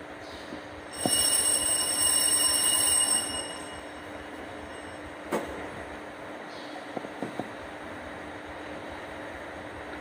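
Altar bells rung at the priest's communion give a high metallic ringing. It starts about a second in, lasts about two and a half seconds and then fades. After it comes a single click and a few light taps, with a low steady hum underneath.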